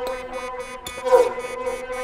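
Electronic tech house beat: a steady synth drone under high, hi-hat-like ticks about four a second, with a short downward-gliding pitched sound about a second in.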